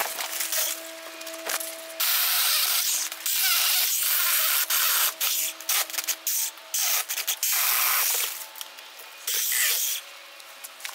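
Jeopace 6-inch battery-powered mini pruning chainsaw cutting through woody shrub stems. A steady motor whine runs throughout, with a loud rasping cutting noise that starts and stops several times as the chain bites into the wood.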